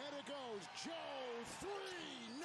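TV commentator's voice from the game broadcast, quiet and in short phrases, over the steady noise of an arena crowd, with a few brief sharp knocks.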